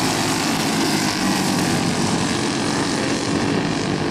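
Briggs & Stratton flathead racing kart engines running together at racing speed, a steady buzzing drone of several engines at slightly different pitches.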